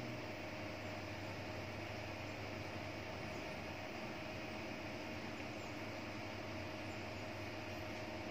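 Steady indoor background hum and hiss, with a faint steady high tone running through it.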